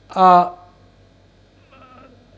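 A man's voice holding one drawn-out syllable for about half a second, then a pause with only a faint steady hum.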